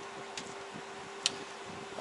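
Quiet room tone: a fan running with a steady low hum and light hiss, and two faint clicks, the sharper one about a second and a quarter in.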